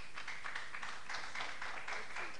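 Audience clapping: a steady run of many overlapping hand claps, greeting a quiz answer just declared correct.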